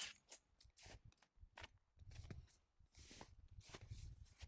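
Faint, scattered clicks and rustles of pruning work on a young Honeycrisp apple tree, as buds and small wood are taken off the branches.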